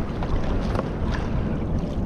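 Steady wind noise on the microphone over sea water washing against a kayak's plastic hull, with a few faint ticks.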